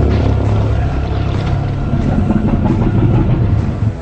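Loud, steady deep rumble of a vessel moving underwater, in film sound design, with a musical score low underneath. It dips briefly at the very end.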